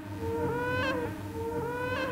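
Behringer Neutron synthesizer note held and then bent sharply upward in pitch at its end, twice, over a steady low drone, with echo repeats from an Electro-Harmonix Stereo Memory Man with Hazarai delay.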